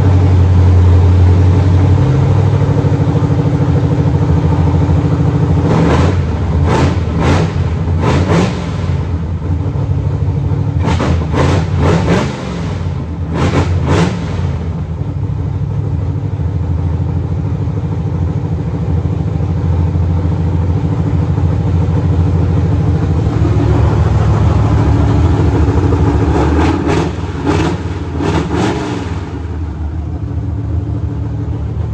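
Supercharged 383 cubic-inch V8 running on its first start, with no exhaust system built yet. It settles at a steady idle and is revved in short blips a few times, in three clusters: about a fifth of the way in, around the middle, and near the end.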